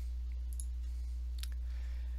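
Two faint computer mouse clicks about a second apart over a steady low hum.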